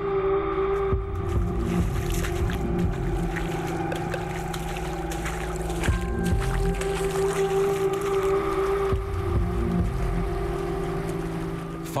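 Sustained droning music with held tones over a steady, rough rumble of rushing tsunami floodwater, with a few sharp knocks.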